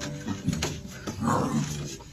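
Tiger cubs growling and snarling as they play-fight, with a louder growl a little past a second in.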